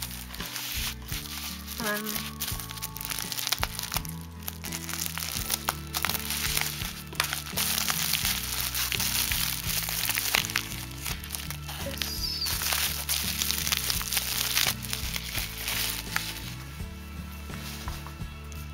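Plastic bubble wrap being handled and pulled open by hand, a dense, continuous crinkling and crackling. Background music plays underneath.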